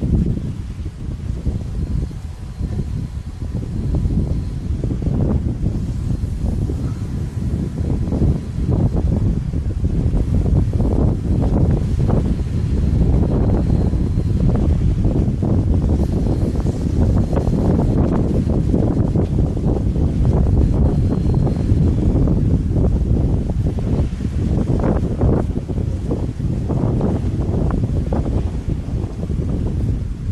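Wind buffeting the camera's microphone: a loud, uneven low rumble that gusts and surges, heavier from about a third of the way in.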